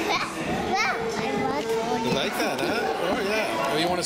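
Several young children talking and calling out at once, their high voices overlapping into a steady chatter.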